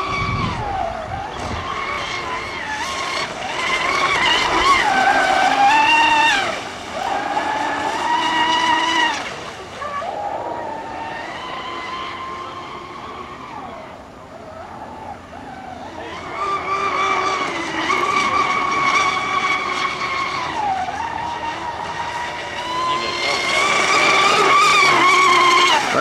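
Promise Hobby Falcon catamaran RC boat's Castle 2028 brushless electric motor whining at high speed, the pitch sliding up and down with throttle through the turns. It fades as the boat runs far out around the middle, then grows loud again as it comes back close near the end.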